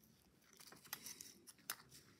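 Faint rustling and a few soft clicks as yarn is pulled through the perforated fabric tape of a zipper by hand.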